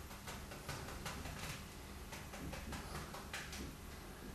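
Faint, irregular soft taps of a bristle brush dabbing paint onto a canvas, a few a second, over a low steady room hum.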